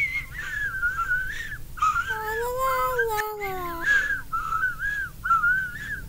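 A child's voice whimpering and crying without words in high, wavering tones, with a longer, lower drawn-out wail in the middle.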